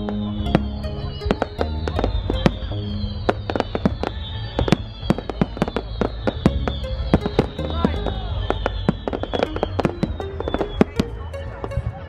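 Aerial fireworks at a display finale: rapid bangs and crackling reports, several a second, with music playing underneath.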